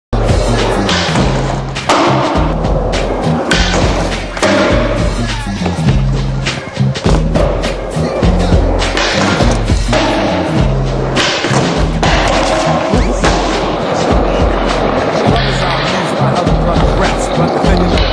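A music track with a stepping bass line and a beat, mixed with skateboard sounds: wheels rolling and the board knocking and landing throughout.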